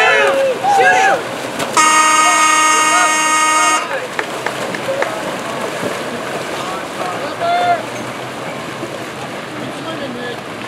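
A water polo game's electric horn sounds one steady, buzzing blast of about two seconds, starting about two seconds in. It is most likely the shot-clock horn marking an expired possession. Shouting voices and splashing water run around it.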